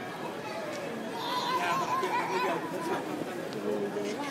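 Background chatter of people's voices, with a high, wavering voice for about a second and a half in the middle.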